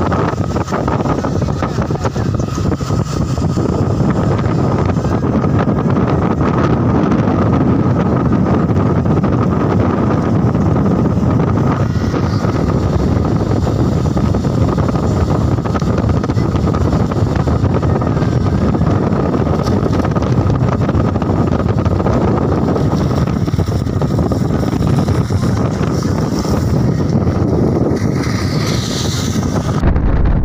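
Steady wind rushing over the microphone from a moving vehicle's open window, over the low rumble of the vehicle driving.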